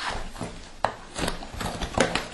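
A cardboard box being opened by hand: scraping and rubbing of the cardboard and its seal tabs, with a sharp tick a little under a second in.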